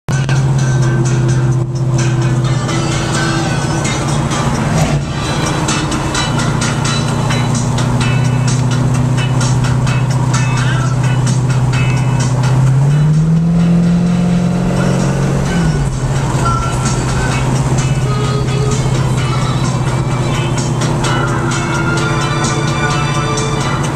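Dodge Dart GT's engine heard from inside the cabin, running at a steady cruise. Past the middle, the engine note rises for about three seconds, then drops back.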